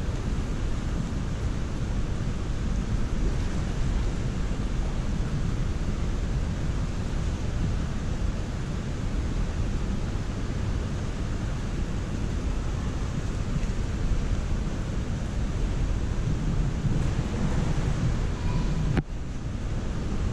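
Steady low rumbling hiss of an indoor swimming-pool hall, with no distinct events; it briefly cuts out about a second before the end.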